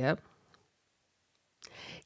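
A woman's spoken phrase trails off, then a pause with one faint mouth click about half a second in and a soft in-breath near the end before she speaks again.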